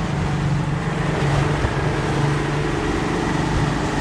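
A boat's engine running steadily at trolling speed, with water rushing past the hull and wind on the microphone. The boat is kept moving while a hooked fish is fought.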